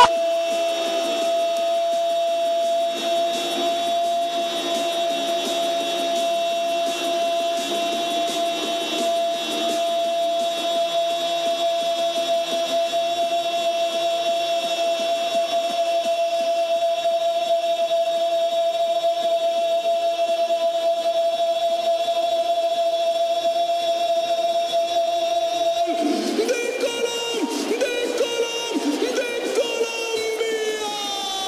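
A football TV commentator's drawn-out goal call, a single sung "gol" held on one steady note for about 26 seconds, then breaking into wavering, sliding shouts near the end.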